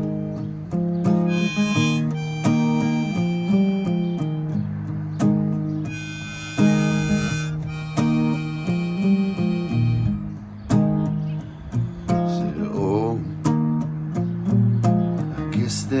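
Acoustic guitar and a harmonica in a neck rack played together: a chord pattern on the guitar under harmonica melody phrases, with a wavering harmonica phrase about twelve seconds in.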